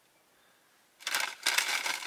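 Takeout food packaging being handled, a rustling, crinkling crackle that starts about a second in.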